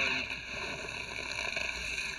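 A steady rushing noise, even and without distinct strikes or tones, from the animated episode's soundtrack.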